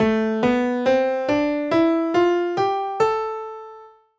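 Piano playing an A natural minor scale upward, eight even notes about two a second from A to the A an octave above. The last note is left ringing and fades out.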